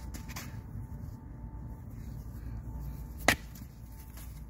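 A single sharp knock about three seconds in: a coconut striking a rock, the shell not yet cracked open.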